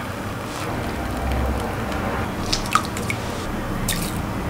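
Tea trickling and dripping through a small metal mesh strainer into a ceramic mug, with a few short light clicks in the second half.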